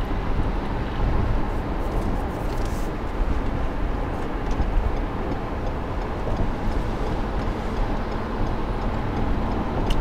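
Steady low road and engine noise inside a car's cabin while driving at freeway speed.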